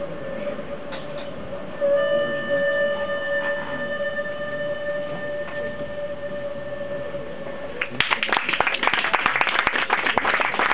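Hurdy-gurdy holding one steady drone note with overtones, which stops about eight seconds in; an audience then breaks into applause.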